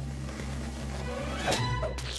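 Cartoon sound effects of a slingshot being drawn and fired: a rising rush that ends in a sharp smack about one and a half seconds in as the wad of bubble gum hits the target, over a low music bed.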